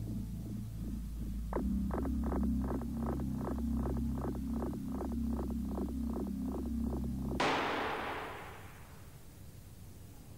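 Tense music with a low drone and a quick pulse of about four beats a second cuts off abruptly about seven seconds in as an airbag module fires. Its pyrotechnic gas generator sets off a sudden bang, followed by a hissing rush of gas that dies away over a second or so.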